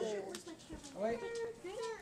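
A young child's high-pitched voice making drawn-out, wavering calls, twice with a short gap between.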